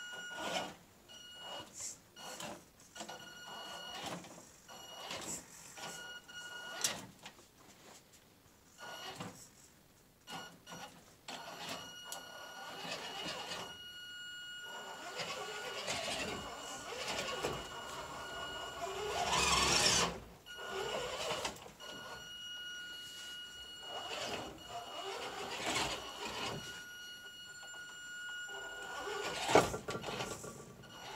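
Axial RC rock crawler's electric motor and geared drivetrain whining in stop-start bursts as it is throttled on and off, with clicks and knocks of the tyres and chassis on wooden slats and rocks. A louder burst of scraping noise comes about two-thirds of the way through.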